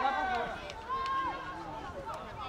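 High-pitched voices shouting and calling out across a football pitch during play.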